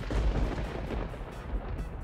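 Wind buffeting the microphone outdoors, a rough low rumble that cuts in suddenly and gusts unevenly, over background music with a light beat.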